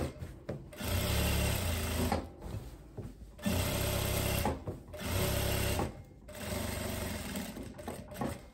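Jack industrial lockstitch sewing machine topstitching a linen seam, running in four short bursts of about a second each with brief stops between them.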